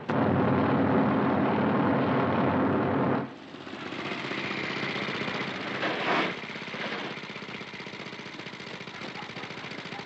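Helicopter rotor and engine chopping loudly with a rapid pulse for about three seconds, cutting off suddenly. Then a motorcycle engine is heard more quietly as it rides up, swells briefly, and keeps running at a low steady level.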